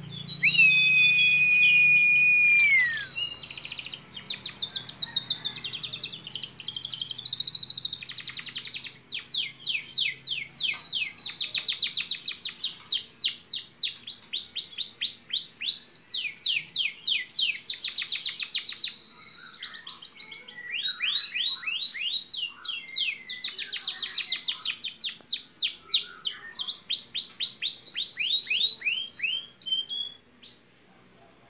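Domestic canary singing a long song. It opens with a long steady whistle that falls away at its end, then runs on in rolls of fast, repeated downward-sweeping notes, each roll lasting a few seconds before the next begins.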